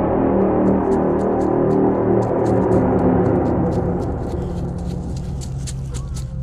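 A cinematic sound-design hit ringing out as a deep, slowly fading gong-like drone, while sharp clicks come in about half a second in and grow busier toward the end.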